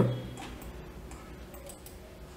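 A few faint ticks of a computer mouse being clicked and dragged, over quiet room tone.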